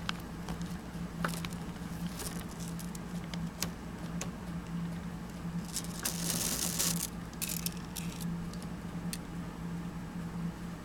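A plastic Breyer model horse and its toy bridle being handled close to the microphone: scattered light clicks and taps, with a short rustling scrape about six seconds in. A steady low electrical hum runs underneath.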